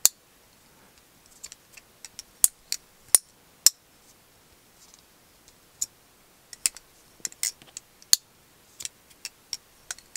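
Titanium magnetic gravity knife (Daily Carry Co MagBlade) being flipped open and closed by hand: a string of sharp, irregular metallic clicks and clacks as the handle halves snap together on their magnets. The clicks come in two runs with a quieter stretch in the middle.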